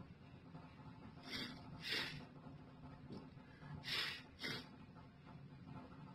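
Low, steady hum inside a Schindler elevator car travelling down, with four short breathy hisses close to the microphone in two pairs, the first pair about a second in and the second pair about four seconds in.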